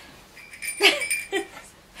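A small dog whining, with two short yips about half a second apart around a second in.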